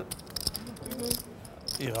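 Poker chips clicking together in quick runs of light clicks, under faint talk.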